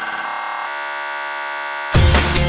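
Electronic dance music: a steady, sustained synthesizer tone with no beat, then the drum-and-bass beat crashes back in near the end.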